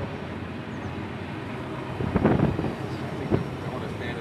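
Steady rumble of a BNSF double-stack intermodal freight train running around a curving mountain grade, heard from above. A brief louder rush about two seconds in and a short knock a second later.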